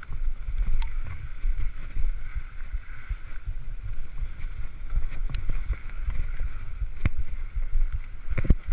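Wind buffeting a camera microphone on a descending Specialized mountain bike, over the steady rolling noise of its tyres on dirt singletrack. A few sharp knocks and rattles come through as the bike jolts over bumps.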